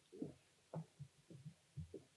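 Faint, irregular low thumps, about two or three a second: footsteps on a stage floor, picked up by the podium microphone.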